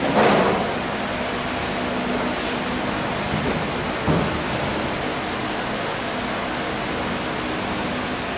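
Steady hissing room noise in a classroom, with a brief louder sound right at the start and a smaller one about four seconds in.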